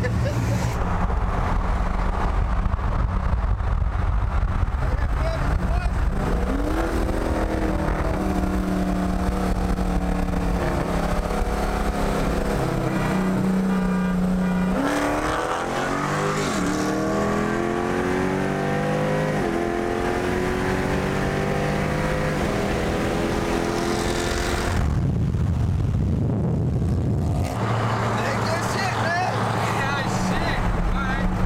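Two V8 muscle cars, a Dodge Charger with a 392/426 stroker Hemi and a Camaro ZL1, accelerating at full throttle in a roll race, heard from inside a moving car with road and wind noise. The engine note climbs steadily in pitch, breaks at a gear shift about halfway through, then climbs again.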